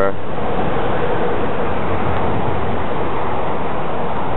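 Steady rush of highway traffic on the I-91 bridges overhead, a continuous even noise with no distinct passes or breaks.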